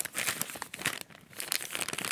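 Paper bag crinkling as it is handled and unfolded open, a continuous run of small irregular crackles.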